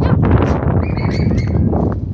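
Wind rumbling on the microphone, with a few short, high bird chirps about a second in.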